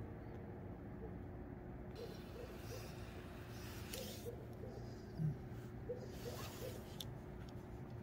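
Soft, irregular popping puffs of two smokers drawing on freshly lit tobacco pipes, a corn cob pipe and a briar, to get the tobacco burning. The puffs are faint and quick, with a brief hiss about halfway through.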